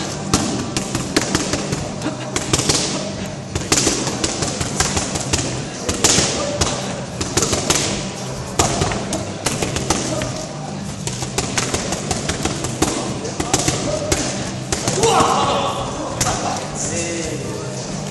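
Punches and kicks landing on padwork mitts, a run of sharp slaps at irregular intervals, sometimes several a second. Crowd chatter and background music run underneath.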